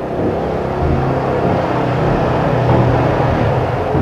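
Motor scooter engine running steadily, its hum growing a little louder towards the middle.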